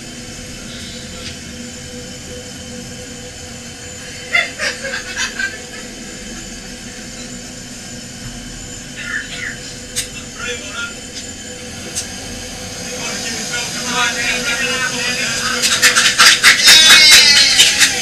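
Steady hiss and hum of air inside a pressurised hyperbaric chamber, with a few brief voice sounds. Near the end a loud, fast run of short sharp sounds builds up, about four a second.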